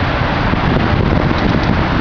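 Wind rushing and buffeting on the microphone of a camera carried by a moving bicycle, a loud, steady rumble.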